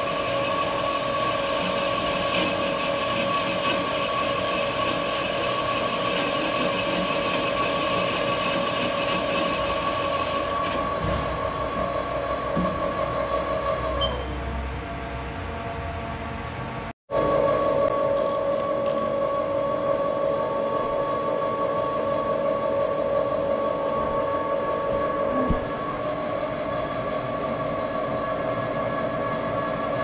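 Steady mechanical hum with a constant whine from a running Haas TL-2 CNC lathe. It softens about 14 seconds in, cuts out for an instant about 17 seconds in, then carries on as before.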